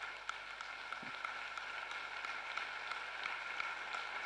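Audience applause: many people clapping steadily, fainter than the lecturer's voice.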